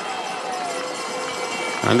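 Course-side sound of cross-country skiers climbing: a steady hiss of skis and poles on snow, with outdoor ambience beneath.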